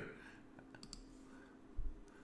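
Faint computer mouse clicks, a few of them about a second in, then a short low thump near the end.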